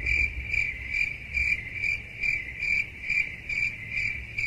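Crickets-chirping sound effect: an even, repeating chirp about three times a second. It works as the 'crickets' joke marking an awkward silence.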